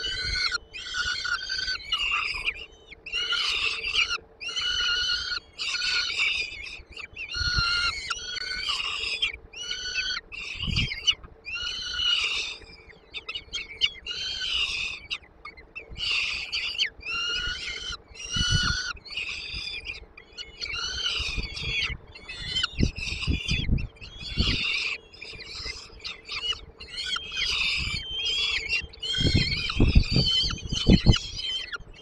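Peregrine falcon chicks begging with harsh, repeated calls, a little more than one a second, while being fed. Scattered dull thumps come from the birds moving about on the floor of the wooden nest box, several of them near the end.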